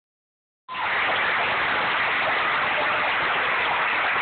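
Large concert audience applauding, a dense, steady wash of clapping that starts abruptly just under a second in, picked up on a phone's microphone.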